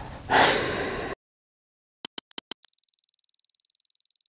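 A man's sharp breath, cut off suddenly, then silence. About two seconds in come four quick electronic clicks and then a steady, high-pitched fluttering beep tone: an edited-in sound effect.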